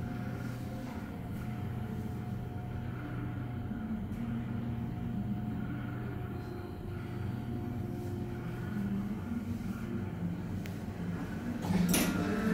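Sigma elevator car travelling down between floors, heard from inside the car: a steady low rumble and hum with a faint steady whine over it. Near the end the sound jumps suddenly louder as the car reaches its floor.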